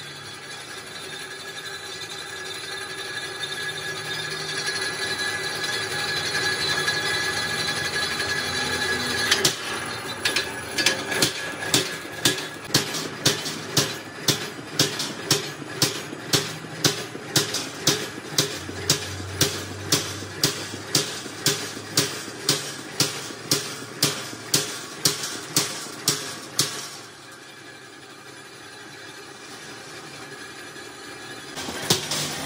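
Belt-driven flywheel punch press punching a row of holes in a steel sheet, about two strokes a second, over a steady machine hum. The hum grows louder before the strokes begin, and the strokes stop a few seconds before the end while the machine keeps running.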